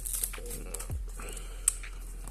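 Background music with the handling noise of a small cardboard box having its plastic shrink-wrap pulled off, with light crinkles and taps and one sharp click near the end.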